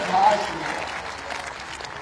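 Audience applauding, the clapping gradually dying down.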